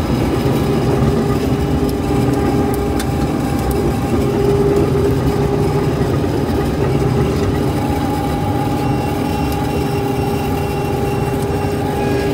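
Old Claas Dominator combine harvester with a Mercedes engine running steadily while cutting barley, heard from inside the cab. A constant machine drone with a held whine over it.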